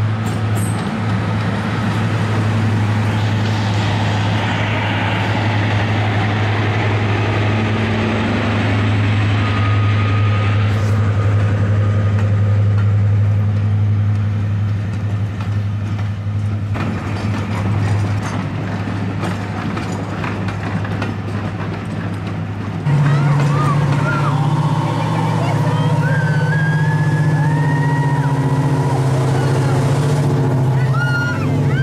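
Class 55 Deltic diesel locomotive passing under power with its coaches, its two Napier Deltic two-stroke engines giving a steady loud drone. The drone fades after about 18 seconds. About 23 seconds in it gives way suddenly to a different, higher steady engine drone, with some high gliding tones.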